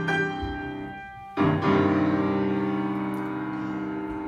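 Piano duet playing held chords: a chord struck at the start dies away, then a louder chord struck about a second and a half in rings on.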